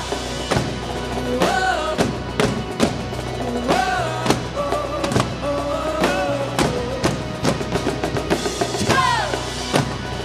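Live worship band playing a driving beat on drums, with marching-style snare and bass drums and electric guitar, and a melody that rises and falls in phrases over it.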